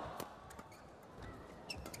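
Badminton rally: a sharp crack of a racket smashing the shuttlecock a moment in, then several more quick racket hits. A few brief high squeaks of court shoes come near the end.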